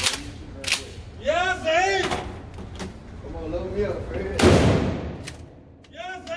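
A 12-gauge pump shotgun firing a single three-inch magnum buckshot load about four and a half seconds in, a heavy blast with a long echo in an indoor range. Sharper, shorter gunshots crack near the start and again a little later.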